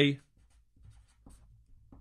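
Felt-tip marker writing on paper: a series of faint, short scratchy strokes.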